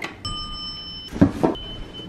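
Elevator call button beeping once when pressed, a steady electronic tone lasting under a second. It is followed by a couple of scuffing knocks.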